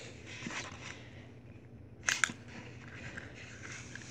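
Quiet scratchy rustle of a leather lighter pouch rubbing against a brass Zippo lighter as it is pulled out, with two sharp clicks close together about two seconds in.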